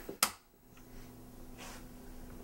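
A single sharp click as the microwave is switched off, followed by a faint steady low hum.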